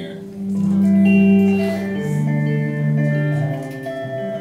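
Live band playing the start of a song: guitars and bass holding long, ringing notes, swelling about a second in.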